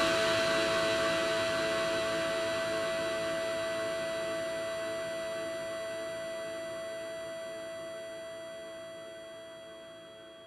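The last note of an electronic dance track held as one steady synthesizer tone, fading slowly and evenly away.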